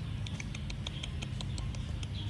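A quick series of light, sharp clicks, about five a second, over a low steady hum, made close to a squirrel on a wooden-slatted park bench.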